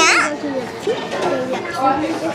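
A girl's short, high-pitched shriek at the very start, then children's voices talking.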